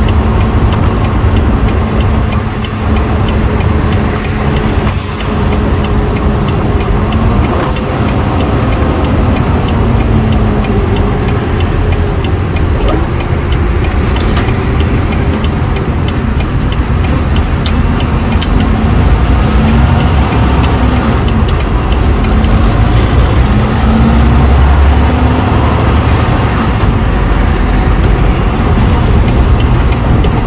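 Inside the cab of a Volvo semi truck on the move: steady diesel engine drone and road rumble. In the second half the engine note climbs and drops several times as the truck pulls away through its gears.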